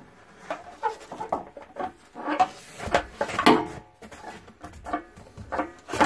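A hinged, segmented anode rod scraping and knocking against the rim of a water heater's top anode port as it is fed down into the tank, in irregular bursts with brief metallic squeaks and rings.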